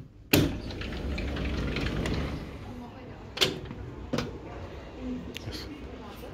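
A balcony door slides open with a sharp clack, followed by a steady low rush of open-air background noise and a couple of light knocks.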